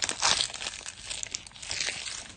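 Foil wrapper of a trading-card pack crinkling as the cards are pulled out of the torn-open pack, loudest a fraction of a second in.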